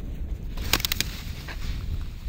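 A plastic saucer sled and a body belly-flopping onto crusty snow: a quick run of several sharp crunches a little under a second in, then a softer scrape, over a low wind rumble on the microphone.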